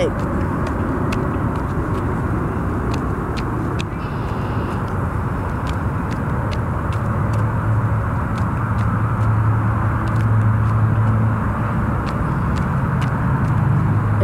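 A steady rumble of motor-vehicle noise, with a low engine hum that grows stronger about halfway through; faint clicks are scattered throughout.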